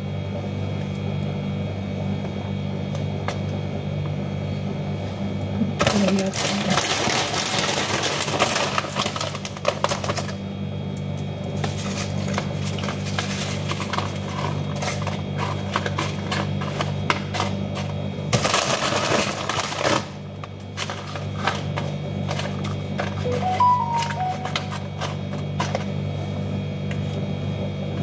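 Tortilla chips being handled, crackling and clattering against each other and a plastic container, in three long stretches of crisp rustling over a steady low hum.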